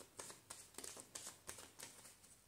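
Tarot cards being shuffled by hand: a faint run of quick card clicks and slaps, about six a second.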